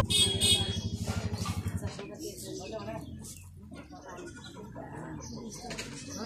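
Faint, indistinct voices of people outdoors, with a low, quickly pulsing rumble during the first two seconds.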